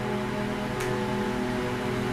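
Background music: a steady, sustained chord held through a pause in the talk.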